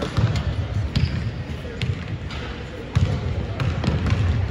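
Basketballs bouncing on a hardwood court in a big arena, several sharp bounces roughly a second apart, with background voices.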